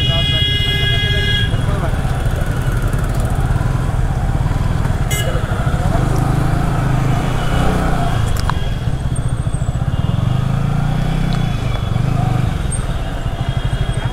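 Yamaha R15 V3 motorcycle's engine running steadily while riding, with a steady high-pitched tone for about the first second and a half.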